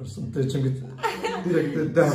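A woman laughing and chuckling, mixed with a few spoken words.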